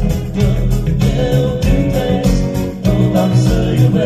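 Band music with a singer: a wavering vocal line over keyboard and bass, with a steady beat of about three strokes a second.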